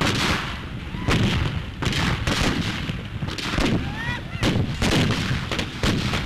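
Ragged gunfire from a staged battle: about a dozen gunshots in uneven succession, roughly two a second, with a few short whooping cries among them.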